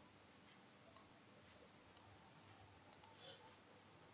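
Near silence: quiet room tone with a few faint computer-mouse clicks and a brief soft hiss about three seconds in.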